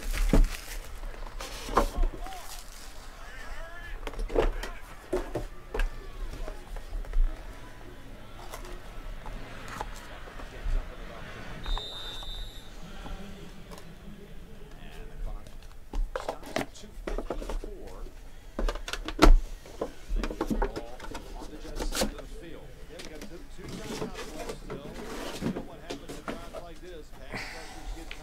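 Cardboard trading-card boxes and a stack of cards being handled on a table: irregular knocks, taps and slides as the box and lid are opened and the cards set down. Faint television football commentary runs underneath.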